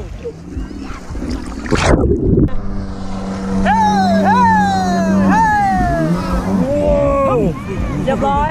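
Jet ski engine running and revving up and down repeatedly as it tows a banana boat, with water splashing close by about two seconds in.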